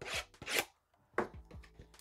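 Shrink-wrapped cardboard trading-card blaster box being torn open in the hands: two short scratchy rips, then a light click a little over a second in and some faint rustling.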